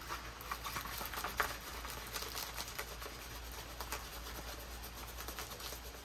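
Diamond-painting kit materials being handled: soft rustling and crinkling of a canvas and plastic packaging, with scattered small clicks.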